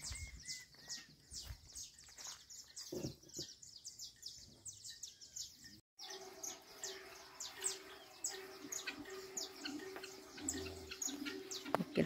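Many small birds chirping all around, dense and overlapping. A brief dropout comes about halfway, and after it a low note repeats in short pulses beneath the chirping.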